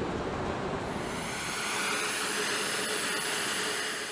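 Steady mechanical roar and hiss, with a thin high whine coming in about a second in, typical of machinery and aircraft running on a flight line.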